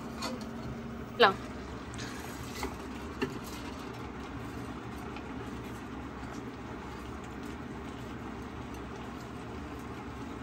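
Light clicks of a utensil scraping a ceramic bowl over an aluminium pot, a couple of times early on, over a steady low kitchen hum.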